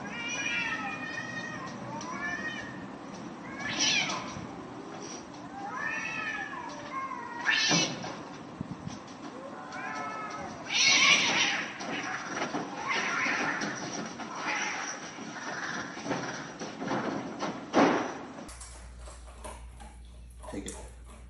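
A cat meowing over and over, drawn-out calls that rise and fall in pitch, a few seconds apart, with several louder, harsher cries among them. Near the end the meowing stops.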